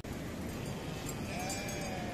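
A single bleat from a grazing flock of sheep and goats, one call of about half a second starting about a second and a half in, over steady background noise.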